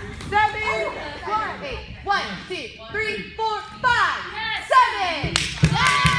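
High, excited young voices shouting and calling out over one another in a large gym. A quick run of sharp smacks comes near the end.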